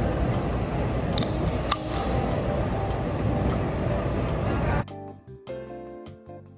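Steady, even noise of a gym room, with two sharp clicks a second or so in as the tab of an aluminium drink can is pried open. The noise cuts off suddenly near the end and music with held notes takes over.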